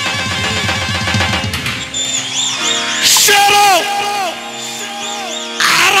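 Live Arabic wedding dance music from an electronic keyboard playing a reedy, wind-instrument-style melody with bent, ornamented notes over held chords. Two short noisy crashes break in, about halfway through and near the end.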